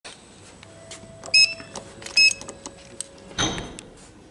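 Two short electronic beeps from a Schindler lift's hall call button as the down call is registered, a little under a second apart. Near the end comes a brief, louder noise that fades away.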